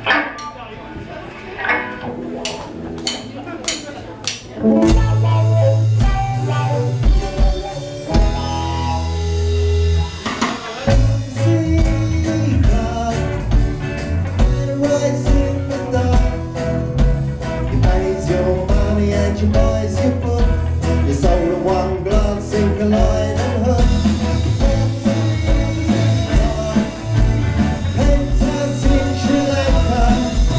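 Live power-pop band (electric and acoustic guitars, bass, keyboard and drums) starting a song: a sparse opening of scattered strikes, then the full band comes in about five seconds in and plays on at full level, with a brief break around ten seconds.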